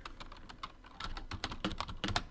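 Typing on a computer keyboard: a quick, irregular run of key clicks as a short line of numbers is entered.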